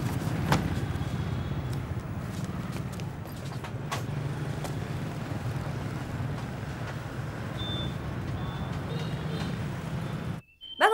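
Steady outdoor city traffic noise, mostly a low rumble, with a few faint clicks and some faint high chirps near the end.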